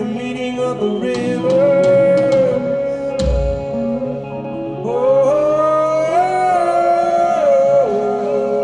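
Live rock band in a loose, free-form jam: a man's voice sings long, gliding held notes over electric guitar. A single low thud comes about three seconds in.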